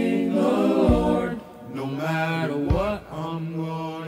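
Youth choir singing a gospel song in close harmony on held chords, with a short break about one and a half seconds in. A low thump sounds about every two seconds.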